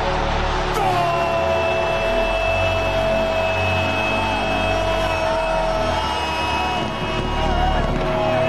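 A TV football commentator's long drawn-out "¡Gol!" goal call, held on one pitch for about six seconds from about a second in, over stadium crowd noise.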